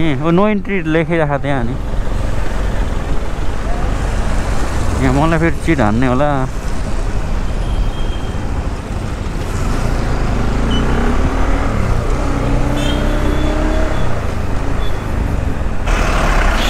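Motorcycle riding along a busy city street: a steady low rumble of engine and wind, with surrounding road traffic.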